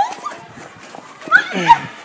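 Short, shrill cries from a person during a scuffle: a brief rising one at the start and a louder one about a second and a half in.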